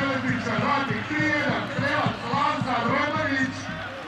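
A man's voice speaking over steady stadium background noise.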